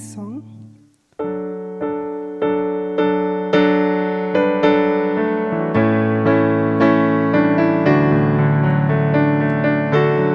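Electric keyboard with a piano sound playing the introduction to a hymn. After a brief silence, it comes in about a second in with evenly struck, slowly decaying chords at a steady walking pace.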